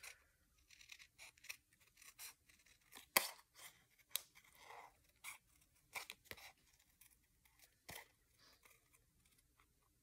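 Scissors snipping paper in faint, short cuts at uneven intervals, fussy-cutting around a printed image.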